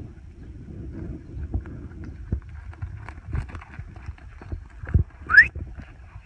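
Scattered soft footfalls of calves and a dog on loose dirt, with wind on the microphone. About five seconds in there is a thump, then a short rising whistle: a handler's herding command whistle to the dog.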